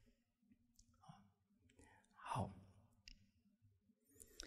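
Near silence in a pause of speech into a close microphone: a short, soft vocal sound that falls in pitch about two seconds in, and a few faint clicks.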